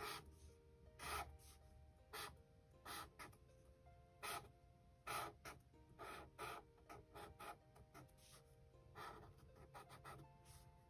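Sharpie fine point marker scratching on sketchbook paper in a series of short, faint strokes, roughly one a second, as small features are drawn.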